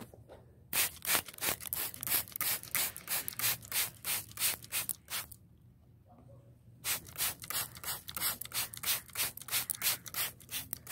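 A hand trigger spray bottle squeezed rapidly, about three or four short hissing spritzes a second. It stops for about a second and a half midway, then starts again.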